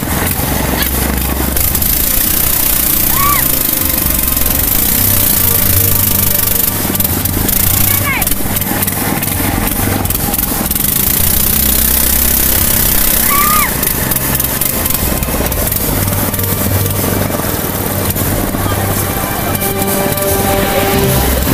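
Loud, steady rush of whitewater rapids around a wooden longboat, with the low drone of the boat's small engine running underneath and background music over it.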